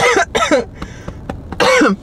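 A woman coughing and clearing her throat in three short bursts: one at the start, one about half a second in, and one near the end.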